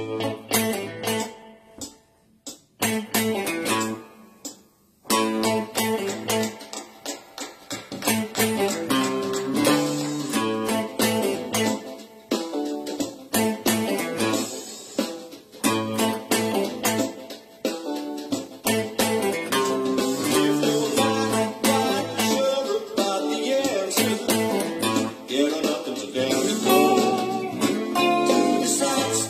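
Electric guitar playing funk-soul chord stabs along with a band backing track: sparse, separated stabs at first, then the full band with bass comes in about five seconds in and plays continuously.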